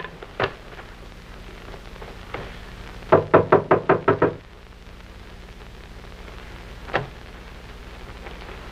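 Knocking on a door: a single knock, then a rapid run of about eight knocks a little after three seconds in, and one more knock near seven seconds.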